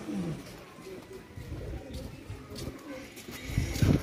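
Rock pigeon cooing, a low falling coo at the start. A loud low bump comes shortly before the end.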